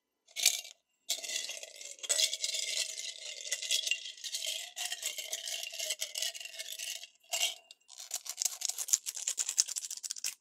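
Foil-wrapped chocolate coins handled close to the microphone: dense crinkling of the gold foil and the coins rattling against one another. The sound starts with a short burst about half a second in, then runs almost without a break from about a second in, with a brief pause a little after seven seconds.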